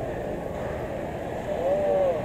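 Indistinct voices over steady low outdoor background noise, with one voice coming through more clearly near the end.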